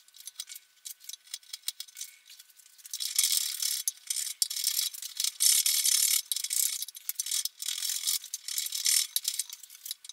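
A few faint light ticks, then from about three seconds in, quick scratchy back-and-forth strokes of a hand sanding block rubbed across the end of a wooden guitar neck tenon to smooth its fit.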